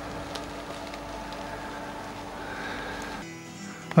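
Steady droning hum made of several held tones, with no hammering or tool strikes; about three seconds in it gives way to a quieter, different hum.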